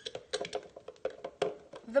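A quick run of light, irregular clicks and taps from handling a blender cup and its blade assembly as the blade is taken out.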